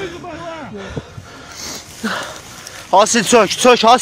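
Men's voices: quieter speech in the first second, then a man shouting loudly about three seconds in.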